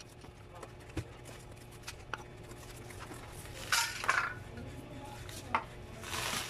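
A cardboard box being opened by hand: a few light knocks and taps on the cardboard, and a louder rustle of the box flaps a little after halfway.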